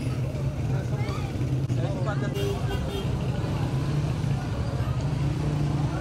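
Busy street-market background: a steady low engine hum, with faint voices of people talking in the distance.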